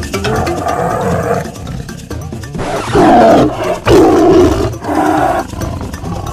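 Lion roars over background music with a steady beat, the two loudest roars about three and four seconds in.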